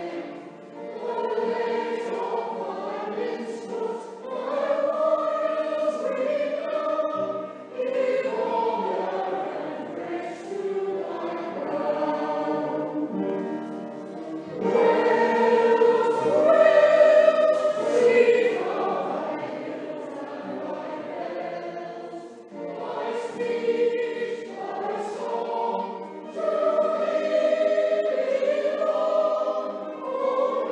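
Amateur mixed choir of men's and women's voices singing a song together, swelling loudest in the middle.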